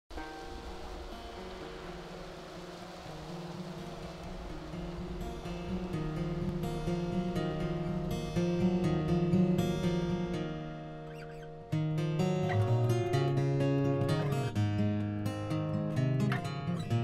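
The opening of a song on fingerpicked acoustic guitar, growing louder over the first seconds; it dips briefly and comes back in fuller about twelve seconds in.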